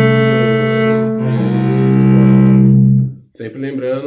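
Cello played with the bow: slow, sustained notes with a change of note about a second in, each note taken on its own bow stroke in an exercise without slurs. The playing stops about three seconds in, and a man's voice follows.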